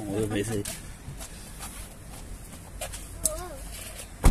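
Clothing and seat rustle with a few faint knocks as a person climbs out of a car's driver seat and steps down onto the ground; a single spoken word at the start.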